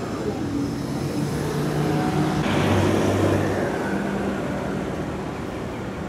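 Road traffic: a motor vehicle's engine drones as it passes, growing loudest about halfway through and then fading away.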